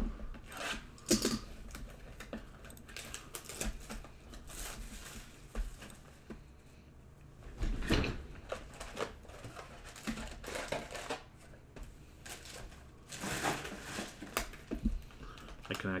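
Hands opening a sealed cardboard trading-card box and handling what is inside: scattered taps, scrapes and crinkles of cardboard and wrapper, with louder rustles now and then.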